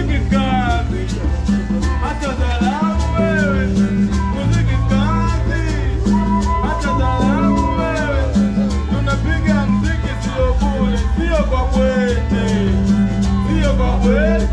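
Band music with a Latin feel: a shaker keeping a quick, even pulse over a stepping bass line, with a sliding melody line on top.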